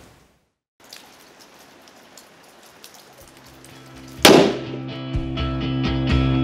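Faint patter of light rain, then about four seconds in a single sharp, loud crack of a .308 Winchester rifle shot fired into soap test blocks. Rock music with guitar comes in under and after the shot.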